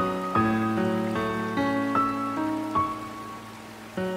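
Steady rainfall mixed with gentle, slow instrumental music whose notes start one after another every half second or so over sustained low notes.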